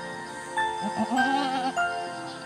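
A goat bleats once, a quavering bleat lasting under a second about a second in, over background music with steady chime-like notes.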